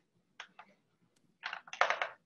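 Computer keyboard keys clicking: a single keystroke, then a quick run of louder keystrokes and clicks about a second and a half in.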